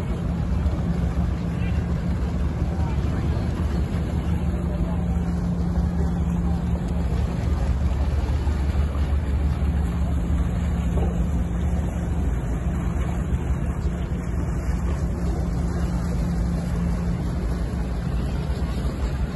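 The Toremar ferry Liburna's diesel engines run with a steady low drone as the ship moves slowly alongside close by, over the wash of water churning along its hull.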